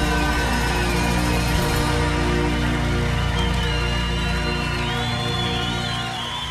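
Live heavy-metal band sustaining a held chord on distorted electric guitars with a steady bass underneath, a ballad ringing out at its close. High wavering tones enter over it about halfway through, and the chord eases slightly near the end.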